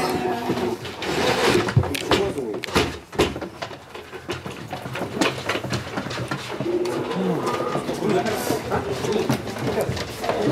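Low, cooing animal calls, repeated, mixed with sharp knocks from handling wooden transport crates in the first few seconds.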